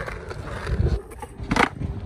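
Skateboard wheels rumbling briefly on asphalt, then one sharp clack about one and a half seconds in as the tail is popped against the pavement in a beginner's ollie attempt.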